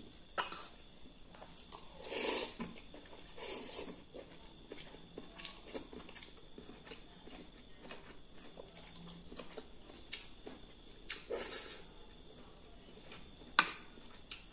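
Metal spoon clicking against a ceramic bowl and eating noises as instant noodles are scooped and eaten, with several sharp clinks, the loudest near the end. A steady high-pitched buzz runs underneath.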